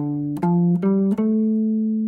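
Clean electric guitar playing four single notes that rise one after another, the last one held and ringing. It is a minor melodic structure, a four-note pattern played over the chord.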